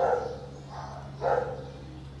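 Two short animal calls about a second apart, over a steady low hum.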